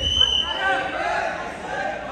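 A thud of a judoka landing on the mat from a throw right at the start, followed by men's voices shouting and calling out.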